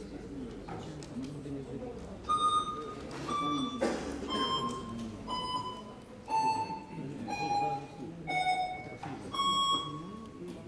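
Electronic voting system's signal sounding while the vote is open: a series of eight electronic tones about a second apart, stepping down in pitch, the last one higher again, over a low murmur of voices in the hall.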